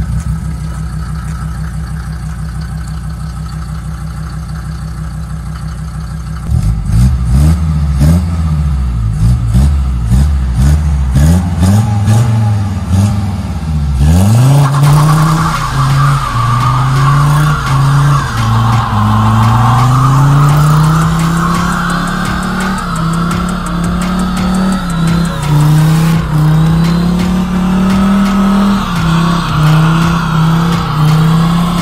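Mercedes-Benz 190 D engine idling, then revved hard several times from about six seconds in. About halfway through it goes to sustained high revs with a wavering tyre squeal as the rear wheels spin on wet asphalt in a burnout.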